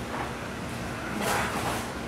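Soft rustle of cotton gi and bare feet shifting on the foam mat as an aikido throw gets under way, swelling about a second in over a steady low room hum.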